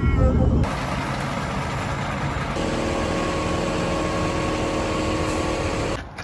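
Brief laughter, then a motor vehicle's engine running with a steady rushing noise. About two and a half seconds in, a steady hum of several even tones joins, as from an idling engine.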